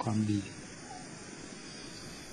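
Steady hiss from an old 1997 sermon recording, after a man's voice finishes a short phrase in Thai in the first half-second.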